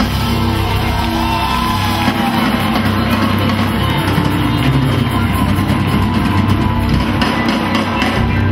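Rock music from a band, with a drum kit keeping a steady beat under sustained bass notes.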